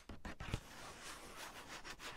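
Fingertips rubbing and tracing across the paper of a sketchbook page, close to a tiny microphone lying on the page: a few taps near the start, then a steady scratchy rustle.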